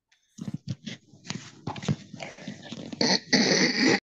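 A dog making noise over video-call audio, in irregular bursts that grow louder and longer in the last second.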